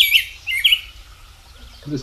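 Recorded rose-breasted grosbeak song: quick, sweet warbled notes that sound similar to a robin, stopping under a second in.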